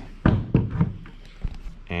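Handling knocks: two sharp thumps about a quarter and half a second in, then a few lighter knocks.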